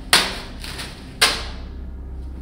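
Two sudden loud impacts about a second apart, each fading away over about half a second.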